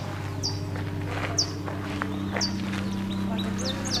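A small bird repeating a short, high chirp that drops in pitch, about once a second, then quickening into a rapid run of chirps near the end, over a steady low hum.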